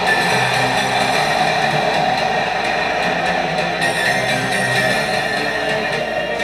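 Background music, steady and unbroken, with no speech over it.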